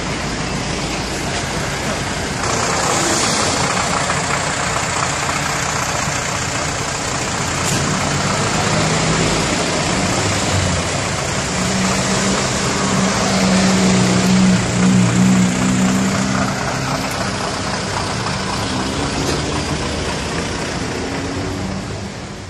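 Road traffic with heavy vehicle engines running. A deeper, louder engine tone stands out from about eleven to sixteen seconds in.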